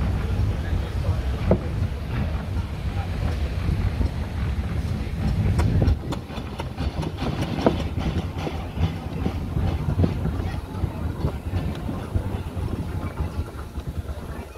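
A Foden steam wagon on the move, running with a heavy low rumble and a clatter of knocks and rattles. About six seconds in the rumble drops away, and the rattling clatter carries on.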